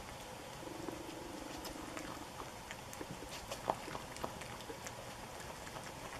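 Virginia opossum chewing and smacking on taco scraps, a quiet run of small irregular wet clicks with one louder click a little past halfway.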